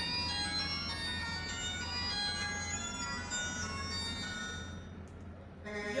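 Mobile phone ringtone playing a chiming electronic melody, fading away about five seconds in.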